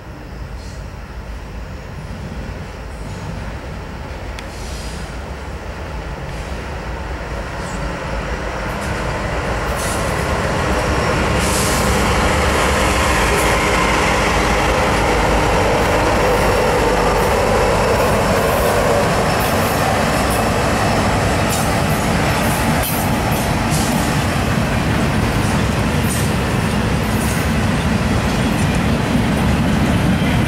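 Diesel freight train passing close by: the lead locomotive, NS 1073, an EMD SD70ACe, grows louder as it approaches over the first dozen seconds and passes about halfway through, then a steady rumble of freight cars rolling by with wheel squeal and clatter.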